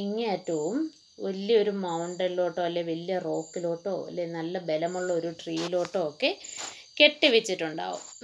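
Speech throughout, over a steady high-pitched insect trill with short high chirps repeating about every second and a half: crickets in the background.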